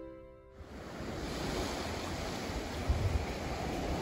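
Background music cuts off in the first half second, followed by the steady wash of ocean waves breaking on a beach.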